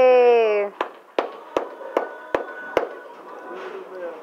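A high voice holds a long, slowly falling note that breaks off under a second in, followed by six sharp clicks evenly spaced about two and a half a second, over the faint steady hum of a busy bowling alley.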